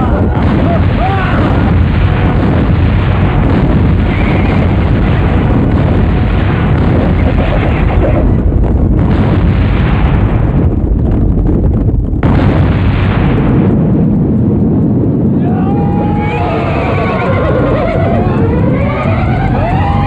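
Film battle sound effects: a dense, continuous barrage of explosions under shouting voices. Horses neighing come in over the last few seconds.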